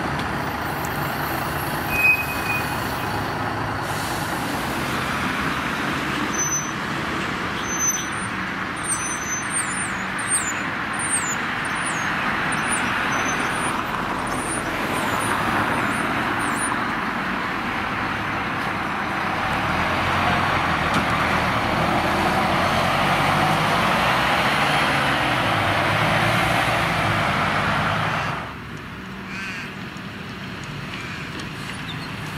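City buses' diesel engines running and moving off, over steady road traffic noise, with a short beep about two seconds in. A bird chirps rapidly in the middle, and the sound drops suddenly near the end.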